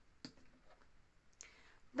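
Two light clicks about a second apart as a plastic cream tube is handled and lifted off a wooden tabletop, over quiet room tone.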